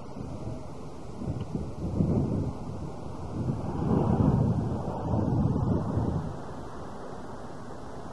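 Wind buffeting the microphone: rumbling gusts swell up about two seconds in, again around four seconds and near six seconds, then settle to a steady low hiss.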